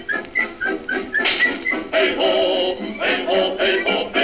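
Orchestral film-soundtrack music with men singing. A run of short high notes comes first, then longer held sung notes from about two seconds in.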